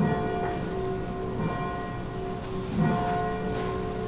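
Church bells ringing: a new stroke about every second and a half, each one ringing on under the next.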